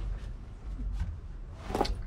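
Light clicks from hands working at the car's dash and steering column, with one sharper knock near the end, over a low steady rumble.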